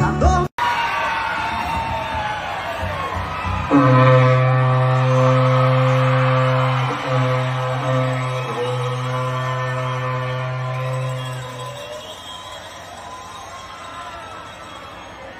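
A berrante, the Brazilian cowherd's ox horn, blown in one long, low, steady note starting about four seconds in and lasting about eight seconds, with two brief breaks, over crowd noise.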